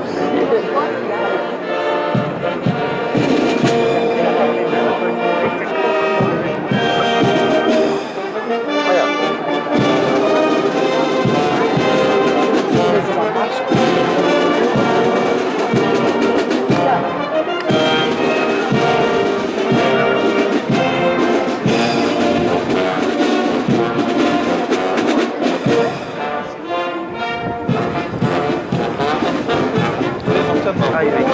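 Police brass band playing, with brass instruments holding sustained notes over snare drums beating a steady pattern.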